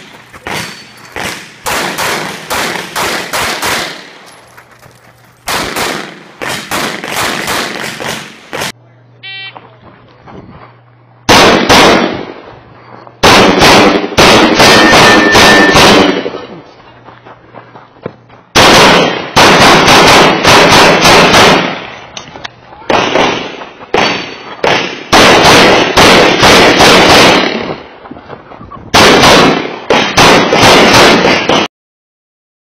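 Open-division race pistols firing 9mm major in rapid strings of shots, with short pauses between strings. A short electronic beep, the shot-timer start signal, comes about nine seconds in, and the loudest shooting follows from about eleven seconds in, close to the shooter's head-mounted camera.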